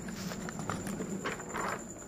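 A workbook page being turned by hand: paper rustling with a few short, soft taps, the loudest rustle near the end.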